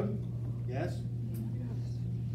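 Speech: a brief spoken word a little under a second in, over a steady low hum in the room.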